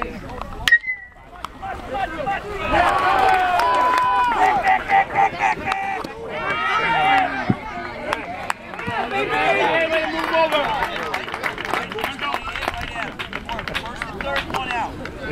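A metal baseball bat hitting the ball: one sharp ping with a short ring, less than a second in. Then spectators and players shout and cheer as the ball is put in play.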